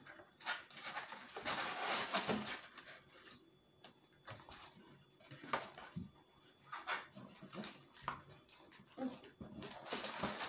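A paperboard takeout box and its paper liner being worked open by hand: irregular rustling and crinkling, loudest about two seconds in, then scattered scrapes and clicks as the flaps are pried apart.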